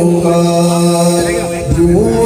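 A man chanting a devotional syair into a microphone, amplified. He holds one long steady note for about a second, then his voice wavers and slides down before the next phrase.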